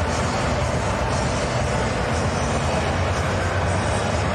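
Steady background din of a boxing venue: an even wash of noise with a low, constant hum underneath.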